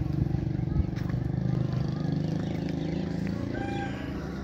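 An engine running steadily at low revs, with a brief higher tone near the end.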